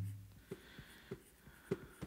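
Stylus tip tapping and stroking on an iPad's glass screen while drawing short feather lines: three light ticks, about one every half second or so.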